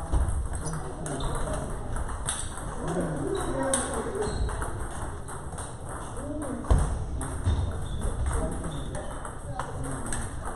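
Table tennis balls clicking off paddles and tables, a quick irregular patter of sharp ticks from several tables in play at once, with people talking underneath.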